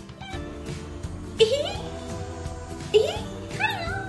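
Talking plush toy cat making high-pitched electronic meows over background music: one about a second and a half in, another about three seconds in, then a wavering call near the end.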